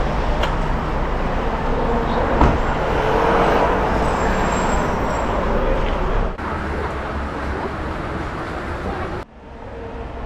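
City street background: steady traffic noise with indistinct voices of passers-by. The sound changes abruptly about six seconds in and again near the end.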